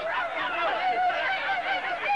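Several men's voices hooting and shouting over one another in a loud, continuous jumble of overlapping calls with no clear words.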